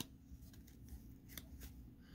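Faint clicks and light rustle of a stack of Prestige football trading cards being handled, as a card is slid off the front of the stack.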